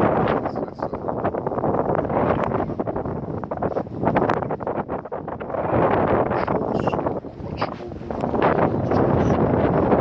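Wind buffeting a phone's microphone: a low rushing noise that swells and eases in gusts.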